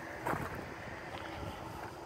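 Quiet steady outdoor background noise with light wind on the microphone.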